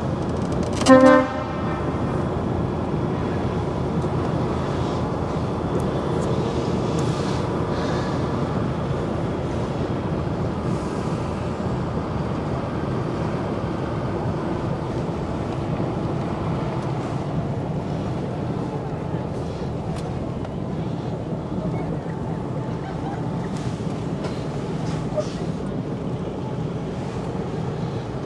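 A lorry horn sounds one short toot about a second in, then the HGV's engine and cab noise run steadily as the truck drives slowly along.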